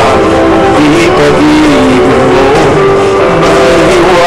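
A person singing a slow song over backing music, the sound loud and overdriven through a webcam microphone.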